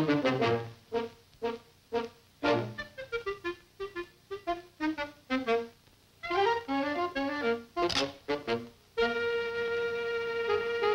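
Orchestral cartoon score with short, separate brass and woodwind notes, some in falling runs. A sharp swish comes about eight seconds in, and a held chord starts about a second later.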